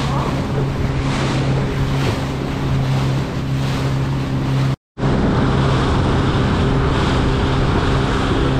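Motor of a 19-foot aluminium boat running steadily at speed, a constant low hum under the rush of water off the hull and wind buffeting the microphone. The sound breaks off for a moment about halfway through, then carries on unchanged.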